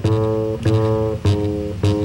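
Live jazz: a plucked double bass playing a line of notes, a new note about every half second, with chords sounding above it.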